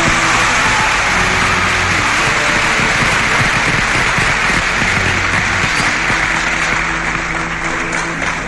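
Audience applauding at the end of a song in a live concert recording. Low held notes from the orchestra sound faintly underneath, and the clapping thins out near the end as the music comes back.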